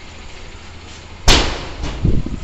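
Steady outdoor background hiss, broken about a second in by one short, loud burst of noise that fades within a quarter of a second.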